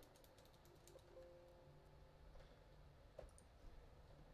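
Near silence with faint computer keyboard typing, a quick run of keystrokes at the start and a few scattered ones later, with faint held tones about a second in.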